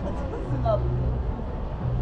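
Indistinct background voices over a low hum that pulses on and off about every second and a half.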